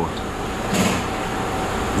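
Steady machine hum with a faint steady tone running under it, and a short hiss about three-quarters of a second in.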